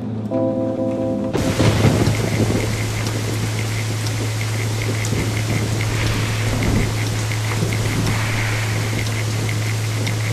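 A few sustained musical notes, cut off suddenly about a second in by a steady wash of rain-like noise. Under the noise runs a constant low hum, and a faint, regular high ticking continues to the end.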